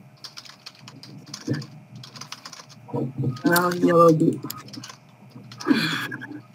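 Typing on a computer keyboard: a run of quick, light key clicks. A short stretch of voice interrupts it a little past the middle, and it is the loudest sound.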